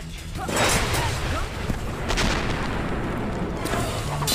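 Cartoon soundtrack of booming explosions and rumbling from an erupting volcano, with loud bursts about half a second in, around two seconds in and near the end.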